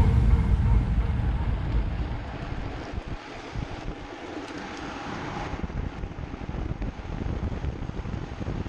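Wind buffeting the microphone over the rolling rumble of a drift trike coasting fast down an asphalt road, with music fading out in the first second or two.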